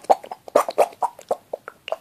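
A rubber poo-shaped squeeze toy squeezed quickly over and over, giving a fast run of short squelching, gurgling noises at about four or five a second. Squeezed this fast, it sounds like a cat being sick.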